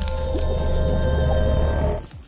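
Logo-intro music sting: a sustained chord over a steady deep bass, with wet splatting sound effects matching a paint-splash animation.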